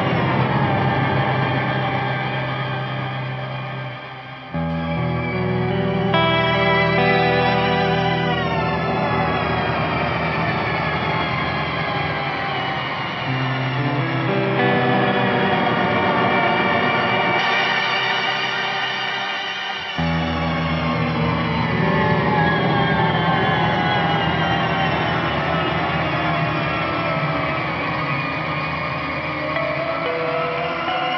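Electric guitar chords played through an EarthQuaker Devices Astral Destiny octave reverb, its modulated octave tails ringing on long after each chord. With the pedal's stretch function engaged, the reverb glides in pitch, rising a few seconds in and sliding downward late on. New chords come in at about four and a half, fourteen and twenty seconds in.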